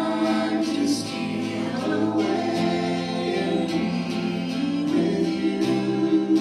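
A worship song sung by a group of voices with strummed acoustic guitar, the held sung notes changing about every two to three seconds.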